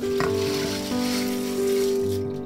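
Rinsing water and red adzuki beans pouring from a stainless steel bowl through a fine-mesh strainer: a steady hiss that starts suddenly at the outset, over background music.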